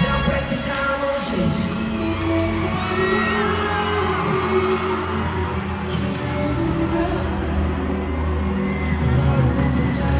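K-pop song with singing, played loud over an arena sound system and recorded from the audience, with the crowd whooping and cheering over it.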